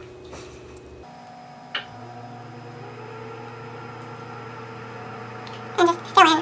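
Quiet room tone with a steady low electrical hum, a single light click about two seconds in, and a brief vocal sound just before the end.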